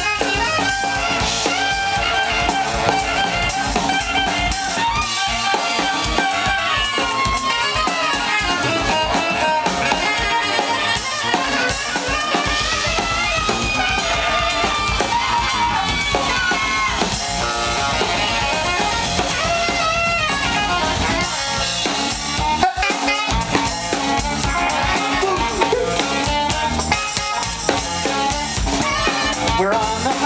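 Live band playing an instrumental passage: several saxophones playing melody lines over a drum kit and synth keyboard, at a steady loud level.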